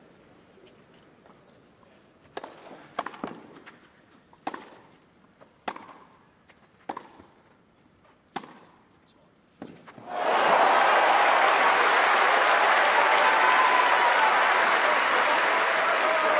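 Tennis rally: a ball struck by rackets back and forth, about eight hits a little over a second apart with the stadium otherwise hushed. About ten seconds in, the crowd breaks into loud cheering and applause that carries on.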